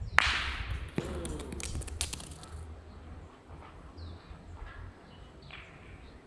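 A steel petanque boule lands hard on loose gravel, then skids and rolls through the stones with a crunching rattle for about two seconds. About a second in there is a sharp metallic clink with a brief ring, as it strikes a stone.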